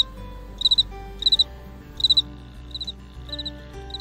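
Electronic cricket chirps from the sound chip in Eric Carle's board book The Very Quiet Cricket: short, high chirps of three quick pulses, repeating about every two-thirds of a second and growing fainter after a couple of seconds.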